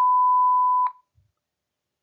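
An electronic beep: one steady, unwavering tone that stops abruptly just under a second in, used as the separator cue between segments of a recorded interpreting-test dialogue.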